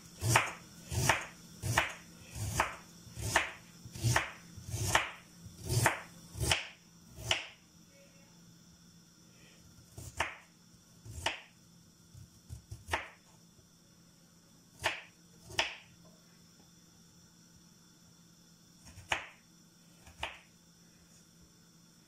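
Kitchen knife cutting through fresh ginger and knocking on a wooden cutting board: a steady cut a little more than once a second for about seven seconds, then a handful of scattered cuts.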